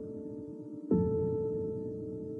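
Background music score: a sustained, bell-like tone that slowly fades is struck again about a second in and keeps ringing.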